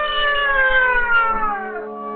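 A man imitating a cat: one long, drawn-out meow that slowly falls in pitch and dies away shortly before the end.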